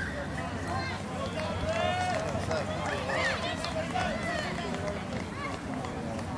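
Overlapping shouts and calls from several voices across an open sports field, over a steady low background noise.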